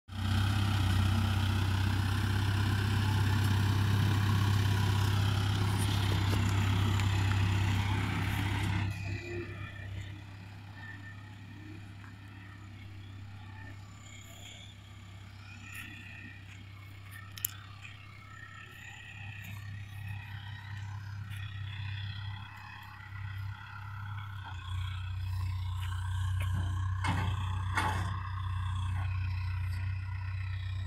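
Backhoe loader's diesel engine running with a steady low drone. It is loud and close for the first nine seconds, then fainter as the machine moves off. It swells again near the end, with a few knocks as it works the ground.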